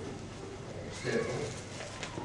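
A person's voice: a short murmured sound about a second in, over room noise.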